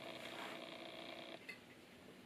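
Near quiet: faint room tone, dropping lower about one and a half seconds in, with a single small click.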